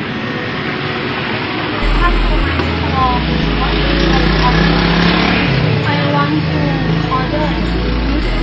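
Loud steady street and traffic noise with short snatches of voices over it; a low, stepped bass line of background music comes in about two seconds in.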